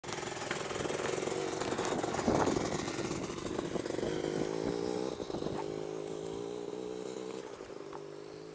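Classic Royal Enfield motorcycle engine idling steadily, with knocks and rubbing from the camera being handled close to the microphone, the loudest knock about two seconds in.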